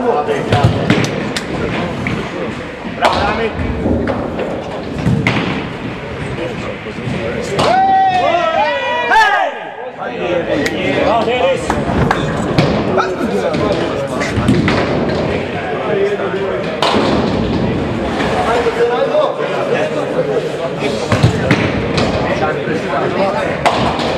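Nine-pin bowling balls thudding onto the lanes and knocking down pins, several sharp knocks, over constant chatter of voices.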